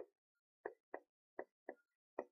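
Faint pen strokes on a whiteboard-style board: about five short taps and scratches, spaced roughly a third of a second apart, as a reading is written out in kana.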